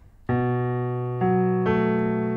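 Piano, the left hand playing the notes of a B minor 7 chord one after another in the low-middle register and holding them so they ring together. The first note comes in about a quarter second in, and the others at about one second and a second and a half.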